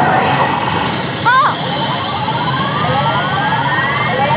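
Pachislot machine's electronic effect sound: a stepped tone climbing steadily in pitch for about two seconds, then starting again from low near the end, with a steady high tone held over it and the parlour's constant din beneath.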